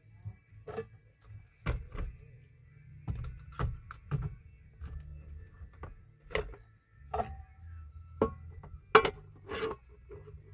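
Food jars and plastic storage containers being set down on a wall shelf with a plastic bottom, a string of irregular knocks and clacks, the loudest near the end. Background music plays underneath.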